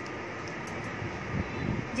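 Steady fan hum filling the room, even and unbroken.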